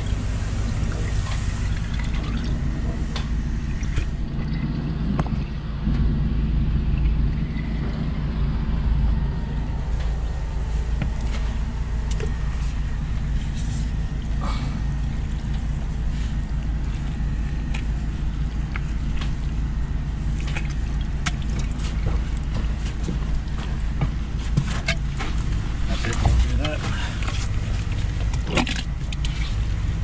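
High-pressure drain jetter's engine running steadily, a low even drone, with scattered short clicks over it.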